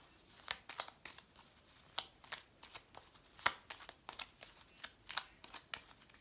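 A Lenormand (baralho cigano) card deck being shuffled by hand, with irregular soft snaps and flicks of the cards several times a second, the sharpest about three and a half seconds in.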